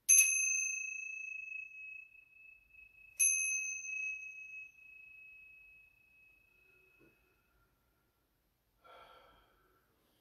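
Small hand bell struck twice, about three seconds apart, each strike giving a clear high ring that fades slowly; the ringing dies away about seven seconds in.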